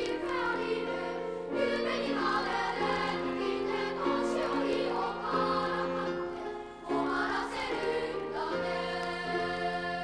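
Boys' choir singing a choral piece in several parts, holding sustained notes in sung phrases, with a brief break between phrases about seven seconds in.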